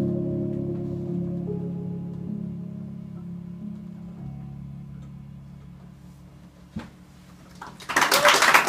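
The song's final sustained chord on keyboard, several low notes held and slowly fading away. A single click comes near the end, and applause breaks out just as the chord dies.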